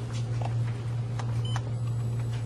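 Steady low electrical hum with a few faint clicks as the light guide of an LED curing light is set against a radiometer's sensor and switched on, and a brief faint high tone about one and a half seconds in.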